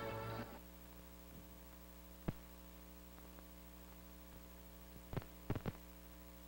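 Swing music with brass ends about half a second in. It leaves the steady electrical hum of an old 16mm film soundtrack, broken by sharp clicks: one about two seconds in and three close together near the end.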